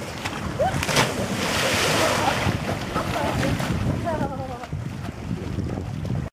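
Person splashing into open water off a jump ramp, a sharp splash about a second in followed by churning water, with wind on the microphone and brief calling voices.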